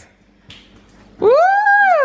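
A person's voice giving one long, high "woo" cheer that starts a little over a second in, its pitch rising and then falling.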